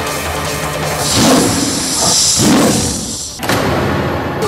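A tiger roar sound effect over loud dramatic background music, the roar coming about a second in and lasting a second or two.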